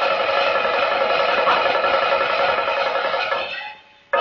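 Music from a revolutionary Beijing opera: one long held chord that fades out shortly before the end.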